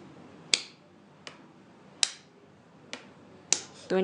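Hand claps keeping a slow beat, one clap per quarter note: three sharp claps about a second and a half apart, with a softer clap between each.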